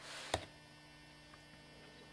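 Faint steady electrical hum, with a brief rustle and one sharp plastic click about a third of a second in as a two-part 5-minute epoxy dual-syringe tube is picked up and handled.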